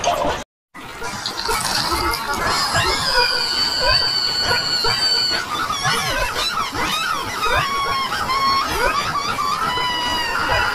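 Layered cartoon soundtrack: several high, squealing cartoon voices and effects sound over one another, gliding up and down in pitch, with a long steady high whistle-like tone a few seconds in. The sound cuts out briefly about half a second in.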